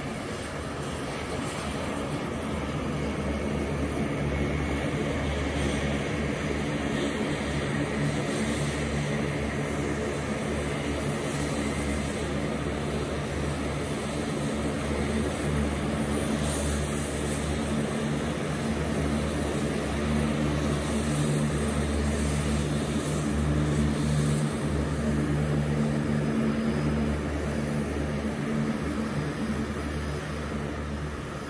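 Lockheed Martin C-130J Super Hercules taxiing, its four Rolls-Royce AE 2100 turboprops turning six-bladed propellers in a steady, deep drone. The drone grows somewhat louder in the second half as the aircraft comes closer.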